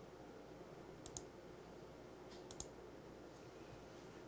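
A few faint, short computer-mouse clicks in two small clusters, about a second in and again about two and a half seconds in, over a quiet studio background.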